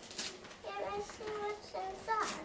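A young child's soft voice making a few short, high-pitched sounds, quiet next to the talk around it.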